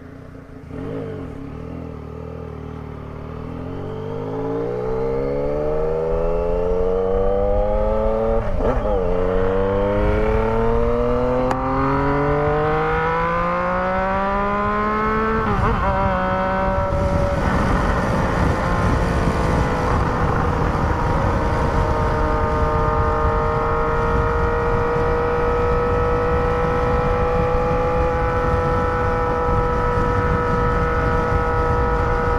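Yamaha Tracer 900 GT's three-cylinder engine heard from the saddle, accelerating hard through the gears. Its pitch climbs, drops at an upshift about 8 seconds in and again about 15 seconds in, then holds steady at cruising speed from about 17 seconds in, with wind rush growing louder.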